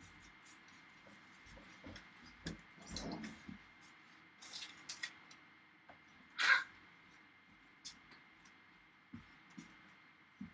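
Quiet sounds of a person moving about a small room: scattered soft knocks and rustles, with one short, louder noise about six and a half seconds in, over a faint steady high whine.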